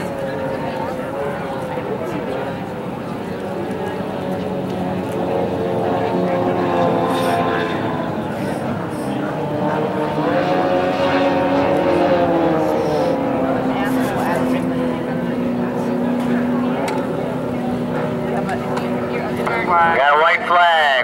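Several racing outboard hydroplanes' two-stroke engines running together, their pitches overlapping and slowly rising and falling as the boats circle the course, loudest around the middle.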